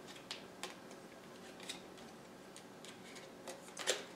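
Tarot cards being handled and shuffled in the hands: faint scattered card clicks and flicks, with a sharper pair of clicks near the end.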